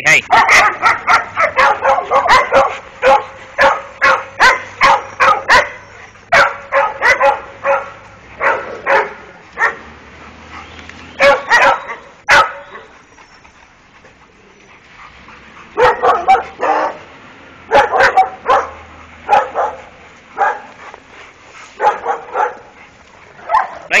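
Dogs barking in rapid runs of short barks, with a lull about halfway through before the barking starts up again.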